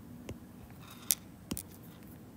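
Stylus tip tapping on a tablet's glass screen while drawing dashes: a few light clicks, the loudest about a second in.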